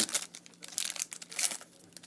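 Foil trading-card pack crinkling and tearing as it is ripped open by hand, in a few short crackles that die away near the end.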